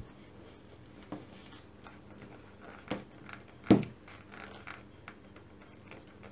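Steel hammer head pressed and rubbed along the back seam of a leather shoe upper, opening the seam allowance flat: quiet scraping on leather with a few short knocks, the loudest a little after halfway.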